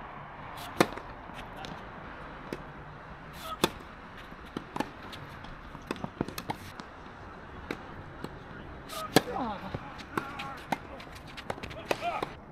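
Tennis rackets striking the ball in a doubles point, a string of sharp pops at uneven intervals, the loudest being the serve about a second in and another hard hit about nine seconds in.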